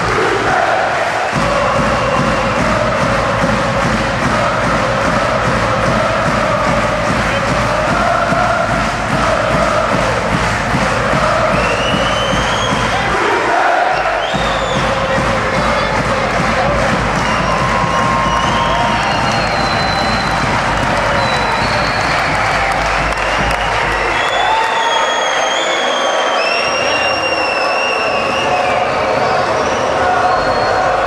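Ice hockey arena crowd cheering and singing loudly and steadily, with high gliding whistle-like tones joining in the second half.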